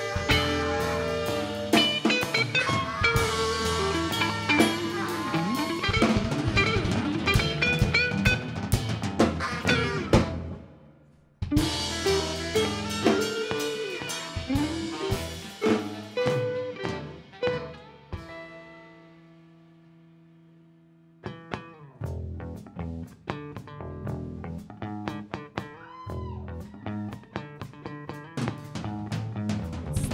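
Live band music: electric guitar lead over drum kit, bass and a saxophone. The band cuts out abruptly about ten seconds in and comes back a second later. Around twenty seconds in there is a short, quieter passage of a few held notes before the full band returns.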